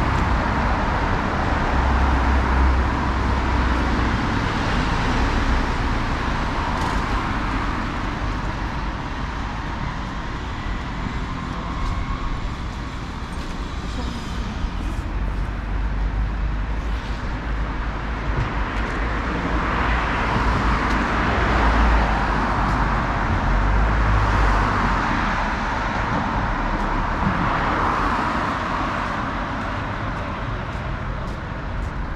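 Road traffic on a city street: a continuous hum and tyre noise of cars driving past close by, swelling as vehicles pass near the start and again through the second half.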